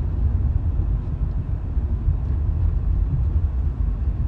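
A steady low rumble, with nothing else standing out above it.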